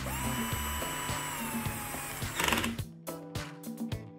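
Cordless drill-driver running as it drives the lock cylinder's retaining screw into the door edge. Its motor whine sags slightly, then it stops about two and a half seconds in. Background music follows.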